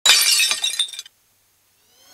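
Glass-shattering sound effect: a sudden crash with tinkling shards for about a second, then it cuts to silence. A faint rising swell begins right at the end.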